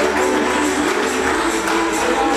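Recorded country-style dance music playing at a steady loudness, with a melody over a regular beat of light high percussion.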